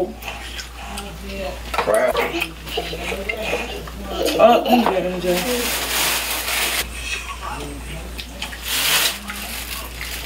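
A plastic shopping bag rustling: a long crinkling burst about halfway through and a shorter one near the end, over the small clicks of crab-leg shells being picked apart.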